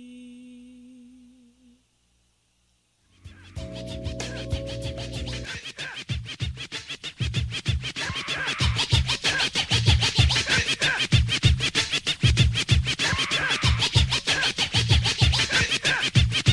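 Hip-hop music: a held, wavering note fades out into about a second of silence. A new track then opens with a sustained chord and deep bass, and after a couple of seconds breaks into a steady drum beat with turntable scratching.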